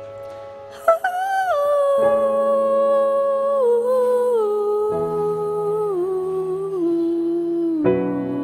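Female singer holding one long wordless vocal line into a microphone, entering about a second in and stepping down in pitch several times before breaking off near the end, over a backing track of sustained piano chords.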